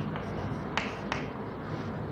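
Chalk on a blackboard as words are written: three sharp taps and clicks of the chalk striking the board, with faint scratching between them.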